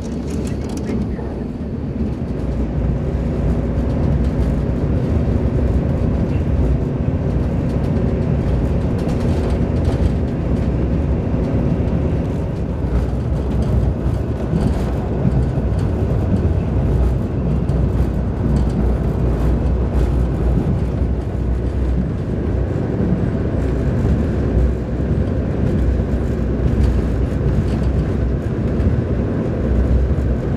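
Passenger train running along the line, heard from inside the carriage: a steady loud rumble of wheels on track.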